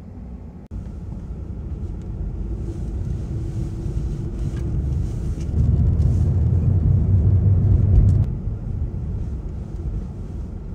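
Low rumble of a small hatchback driving, heard from inside the cabin: engine and road noise that cuts in suddenly just under a second in, builds steadily, and eases off about eight seconds in.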